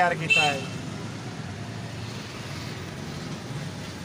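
Steady low rumble of street background noise, like distant traffic, with a word of speech at the very start.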